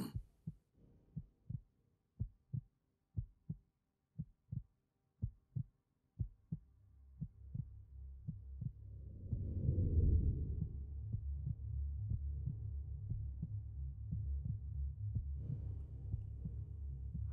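Film sound-design heartbeat: pairs of low, muffled thumps about once a second that stop after about six seconds. A deep low drone then swells up, peaks around ten seconds in and holds steady.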